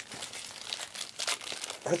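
Plastic wrapping crinkling as it is handled, in quick irregular crackles. A voice comes in near the end.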